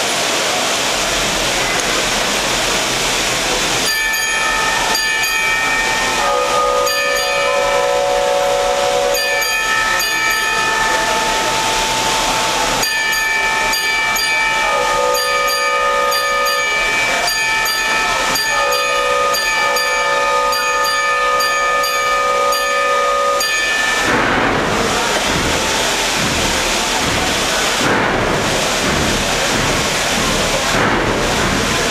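Wurlitzer theatre pipe organ imitating a steam train: a steady hiss, then from about four seconds in a series of held, whistle-like chords sounding in blasts with light rhythmic ticking, until the hiss returns with a pulsing rhythm near the end.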